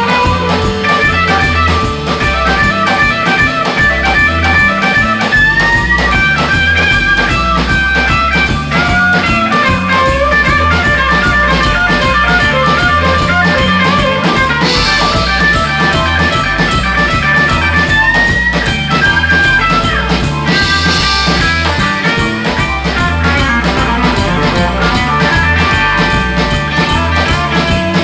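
Live blues band playing an instrumental passage: an electric guitar lead with bent notes over bass guitar, a drum kit and a Nord Electro 3 keyboard. Cymbal crashes come twice, about 15 and 21 seconds in.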